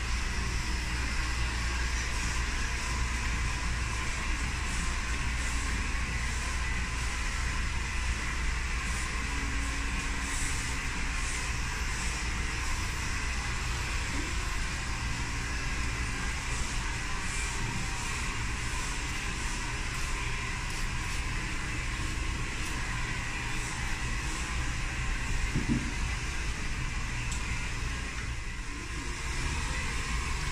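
Electric hair clippers running with a steady buzz as they trim the hair at the back of a boy's neck.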